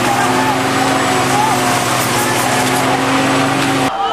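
Water cannon truck's engine running in a steady low hum under the loud, even hiss of its water jet, with people shouting in the crowd. The sound cuts off abruptly just before the end.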